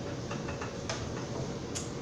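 A serving spoon making a handful of light clicks and taps against a plate and skillet as food is spooned out, over a faint steady hum.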